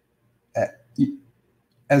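Two brief vocal sounds from a man, about half a second apart.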